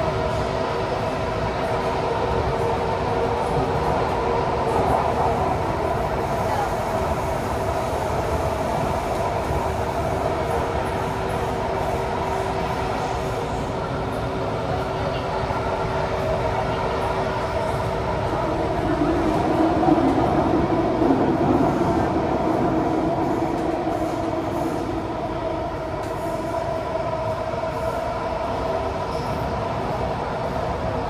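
Interior of a Kawasaki Heavy Industries & CRRC Sifang CT251 metro train running between stations: a steady rumble with a constant hum in several tones. About twenty seconds in, one tone drops out and the rumble briefly swells louder.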